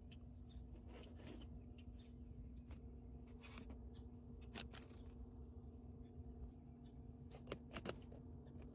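Faint, scattered light taps and ticks as tiny decorations are handled and pushed into terrarium soil among stones, over a steady low hum.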